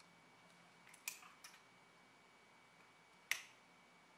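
Near silence broken by a few faint small clicks about a second in and one sharper click near the end: a flat-cable connector latch on a laptop system board being flipped open and the cable unplugged with a tool.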